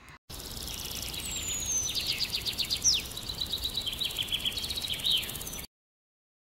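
Small songbirds singing outdoors: rapid high trills and chirps with a couple of quick downward whistles, over a steady background hiss, cut off abruptly near the end.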